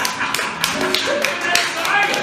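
A quick, irregular run of sharp taps, several a second, over short held notes from a keyboard or voice.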